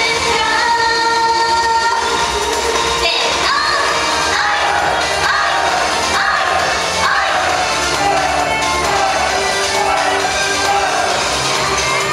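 Female idol group singing in unison into handheld microphones over a loud pop backing track, amplified through the stage PA.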